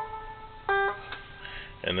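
A one-string diddley bow fitted with a pickup, playing single plucked notes down the scale. One note is still ringing and fading, and about two-thirds of a second in a lower note (A down to G) is plucked and rings clearly.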